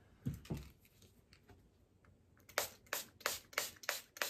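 Finger-pump spray bottle of Marabu Art Spray paint spritzing in short sprays, about three a second, starting a couple of seconds in. Two soft knocks come just after the start.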